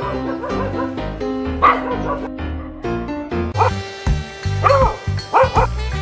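Dogs barking over background music, with a few short, sharp barks in the second half.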